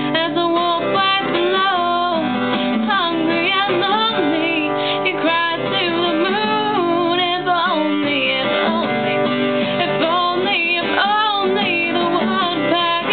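Guitar played under a voice singing, in a home cover of a pop-rock song.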